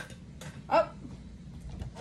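A short spoken "oh!" about three-quarters of a second in, over quiet room tone, with a faint tap just before it.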